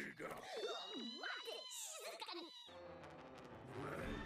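Anime soundtrack played quietly: exaggerated cartoon character voices whose pitch swoops up and down, strongest in the first two-thirds.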